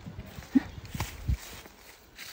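A few dull knocks as a long wooden pole is jabbed into the hollow at the base of a tree trunk, with a short grunt about half a second in.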